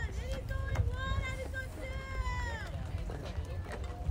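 High-pitched voices shouting in long, drawn-out calls, with wind rumbling on the microphone; the shouting stops about two and a half seconds in.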